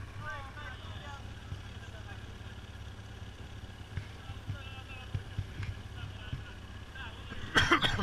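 Enduro motorcycle engine idling with a steady low hum, with faint voices in the background and a brief loud call near the end.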